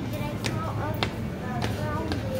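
Supermarket ambience: a steady low hum under brief, indistinct voices, with a few sharp taps or clicks about half a second apart.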